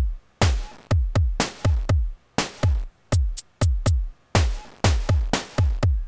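Electronic drum pattern from the JR Hexatone Pro sequencer app: sampled drum hits, including snare and hi-hat, in an uneven, shifting rhythm. Each hit has a deep thump that drops in pitch. The pattern is generated by the app's oscillators travelling along its hexagon paths.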